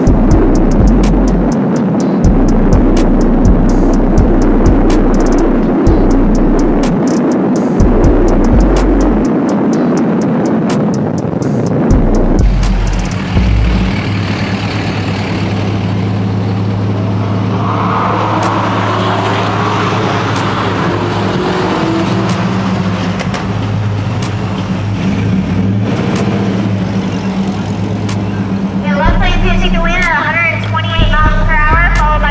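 Music with a heavy bass line playing inside a moving vehicle over road noise. Partway through it cuts suddenly to a steady low engine drone, with a voice near the end.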